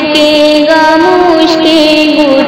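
A high voice singing a melody in long held notes that glide from one to the next, over backing music.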